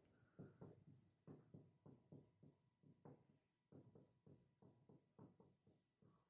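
Faint writing on a whiteboard with a marker: a quick run of short strokes, about two or three a second.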